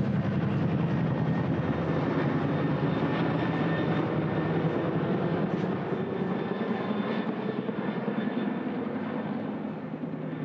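Steady low engine drone that eases off slowly over the last few seconds.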